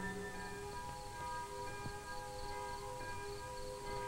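Soft background music from the film's score: a quiet chord of long held tones, with a new chord coming in shortly after the start.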